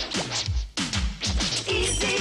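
Cartoon theme-song music, instrumental before the vocals: an electronic beat of sharp hits, about four a second, each with a low thud that drops in pitch.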